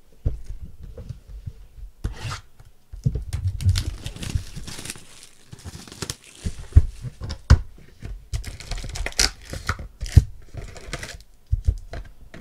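Plastic shrink wrap being torn off a trading-card hobby box and crinkled, in irregular bursts, with knocks as the cardboard box is opened and its foil packs are handled.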